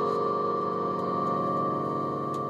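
Music: a single keyboard chord held and ringing steadily, easing off only slightly.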